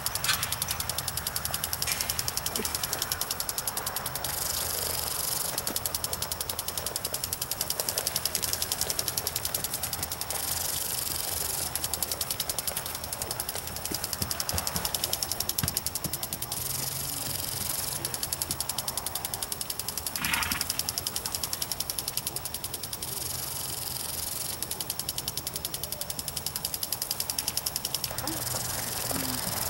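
Lawn sprinkler running: a steady hissing spray with a fast ticking, louder every six seconds or so as the spray sweeps round.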